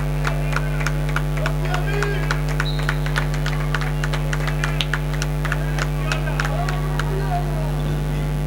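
Indoor handball game in a sports hall: frequent short, sharp knocks from play on the court and scattered voices, under a strong steady electrical mains hum on the audio.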